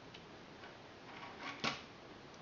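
Faint clicks and light knocks of a plastic round knitting loom being handled, the loudest a single sharp click about one and a half seconds in.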